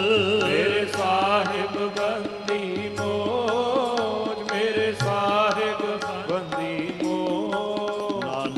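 Sikh shabad kirtan: harmoniums sounding held notes and a melody, tabla strokes in a steady rhythm, and a voice singing a wavering, ornamented line over them.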